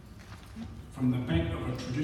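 A person speaking, starting about a second in after a short pause.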